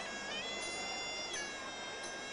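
Pi, the Thai oboe of a Muay Thai sarama band, playing a long held nasal note. It slides up in pitch shortly after the start, holds, then falls back a little past halfway, over a steady background of crowd noise.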